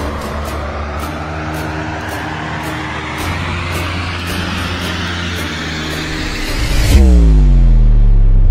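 Cinematic trailer-style soundtrack. Sustained low drone notes sit under a whooshing riser that climbs in pitch for about seven seconds, with light clicks. Near the end the riser cuts off abruptly into a loud booming hit whose pitch drops steeply.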